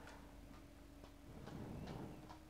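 Faint, regular ticking, about two ticks a second, over a quiet steady hum.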